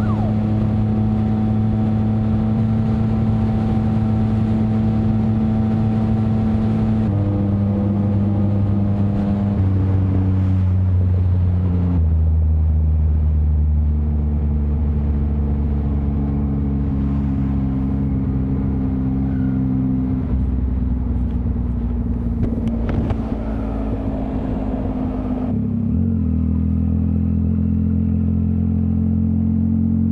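Yamaha MT-09's inline three-cylinder engine through a straight-piped Mivv X-M5 exhaust with no catalytic converter or silencer, on a race tune, running at steady road speed. Its loud, even drone steps down in pitch several times, with a brief dip and pick-up near the end.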